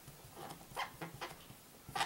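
Marker writing on paper: a handful of short, faint strokes as letters are drawn.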